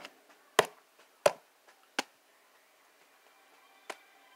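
Sharp button clicks, five in all, about one every half to three-quarters of a second and then a longer gap before the last. They fit a remote control being pressed to skip back through a film on the TV.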